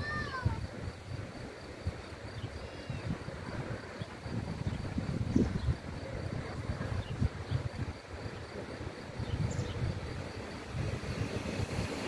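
Wind buffeting the microphone in a low, uneven rumble, with a short falling call right at the start and a few faint chirps.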